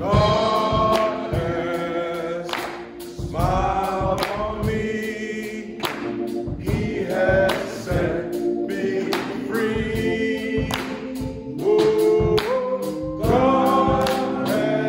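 Gospel singing: a man's lead voice through a microphone, with other voices joining in and hands clapping along in time.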